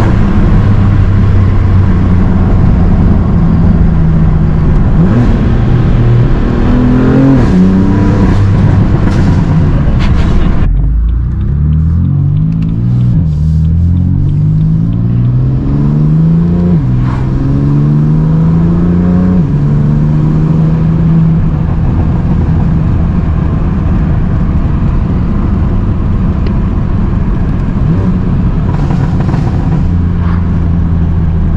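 Full-bolt-on BMW F80 M3's twin-turbo inline-six, heard from the cabin, running steadily, then pulling hard about a third of the way in, its pitch climbing and dropping back with several quick upshifts, before settling to a steady cruise.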